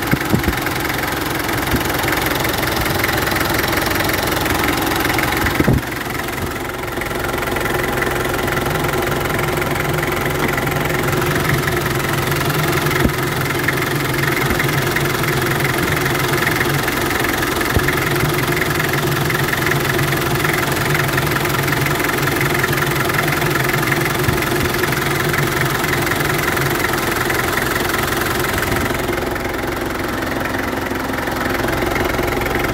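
Mitsubishi Kuda diesel engine idling steadily, heard from the open engine bay.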